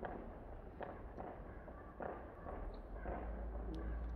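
Distant fireworks going off: a string of faint bangs at irregular intervals, roughly one every half second to second, over a steady low rumble.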